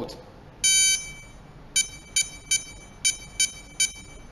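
Touch keypad of an RFID password locker lock beeping as a code is entered: one longer high-pitched electronic beep about half a second in, then six short beeps, one for each key pressed.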